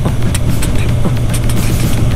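Suzuki GSX-S750's inline-four engine running at a steady cruising speed, with wind rushing over the microphone.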